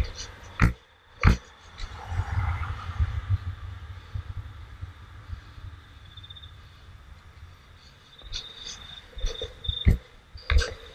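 Longboard wheels rolling on asphalt with a steady low rumble, broken by a few sharp knocks in the first second and again near the end.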